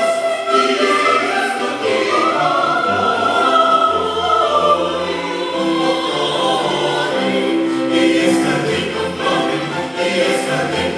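Chamber choir singing in harmony, accompanied by a string orchestra with double bass, in sustained notes that move steadily from one chord to the next.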